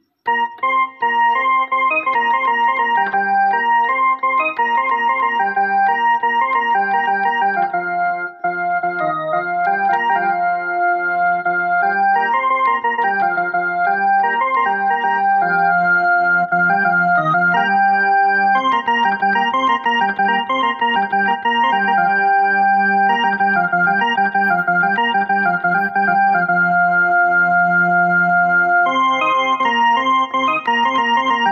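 Portable electronic keyboard played with an organ-like voice: a melody of sustained notes starting just after the beginning and continuing without a break.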